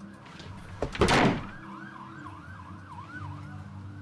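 A door shutting with a thud about a second in. A fainter siren sounds throughout, its pitch sweeping quickly up and down over and over.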